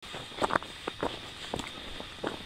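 Hiker's footsteps crunching on a thin layer of snow over the trail, at a steady walking pace.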